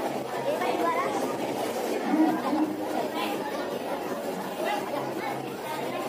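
Indistinct chatter of many voices talking at once, with no single clear speaker.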